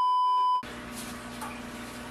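A steady, single-pitched test-tone beep of the kind that goes with TV colour bars, lasting about half a second and cutting off abruptly. It gives way to quiet room tone with a faint low hum.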